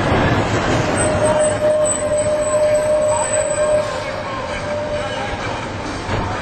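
A van passing close along the street, with a steady squeal held for about three seconds, over voices.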